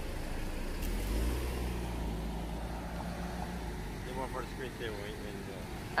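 A motor vehicle passing on the road: a low engine rumble that swells about a second in and fades over the next couple of seconds. Faint voices can be heard in the background.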